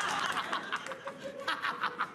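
Studio audience laughing: a dense crowd din dies away in the first half second, then laughter comes in quick, evenly spaced bursts in the second half.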